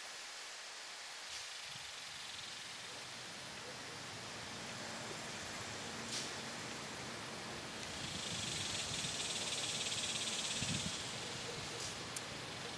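Outdoor summer ambience with a steady hiss. A high-pitched insect buzz swells about eight seconds in and fades near the end, with one small click around six seconds in.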